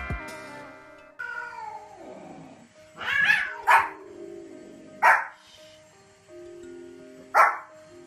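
A Pomeranian barks in three short, sharp yaps spaced a second or two apart, and a cat gives a drawn-out meow just before the first one, about three seconds in. A chime jingle fades out at the start, and quiet background music plays underneath.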